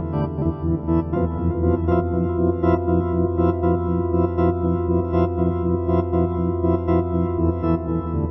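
Electronic organ sound on a keyboard holding sustained chords, modulated by an LFO so that the level pulses quickly and unevenly.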